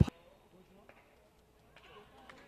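A commentator's word breaking off at the very start, then near silence with only faint background sound.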